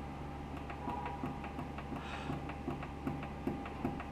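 A low steady hum with many faint, light ticks scattered through it.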